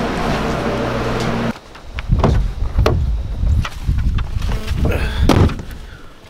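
A steady low hum as a glass entrance door is pulled open. About a second and a half in the hum stops abruptly and a run of low thumps and knocks follows.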